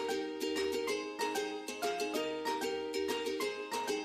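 Light background music led by a plucked string instrument, with quickly picked notes and little bass.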